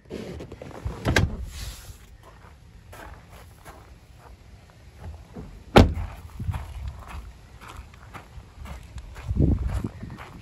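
Rear door of a 2011 Chevrolet Silverado 2500 HD crew cab shut with one sharp, loud slam about six seconds in, amid scattered knocks and handling noise. Footsteps on gravel follow near the end.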